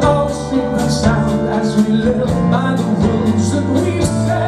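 Live rock band playing: a sung lead vocal over electric guitars, keyboards and a drum kit with steady cymbal hits.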